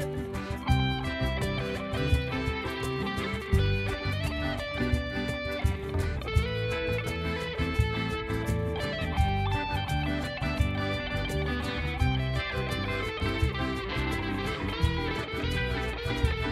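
Instrumental passage of a song with a steady beat, between sung verses.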